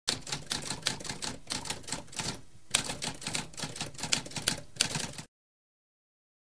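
Typewriter typing: a rapid run of key strikes, several a second, with a short break about halfway, stopping abruptly a little after five seconds in.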